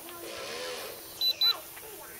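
Two short, high electronic beeps in quick succession, a little over a second in, over faint distant voices.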